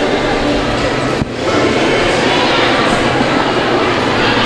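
Loud, dense crowd chatter and steady rumble of a busy indoor public space, with no single voice standing out; it drops briefly about a second in.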